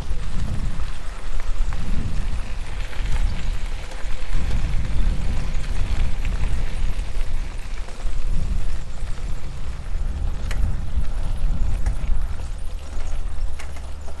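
Wind buffeting the microphone in irregular low gusts, over the crunch and rattle of bicycle tyres rolling along a gravel forest road.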